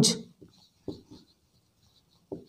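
Marker pen writing on a whiteboard: a few faint, short strokes about a second in.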